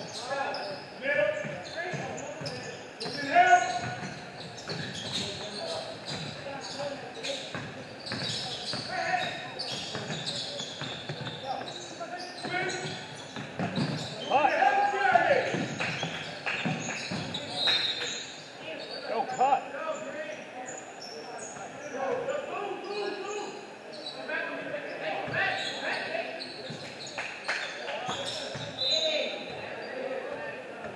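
Basketball bouncing on a hardwood gym floor during play, with a sharper thump a few seconds in. Players' voices shout out between the bounces, loudest about midway.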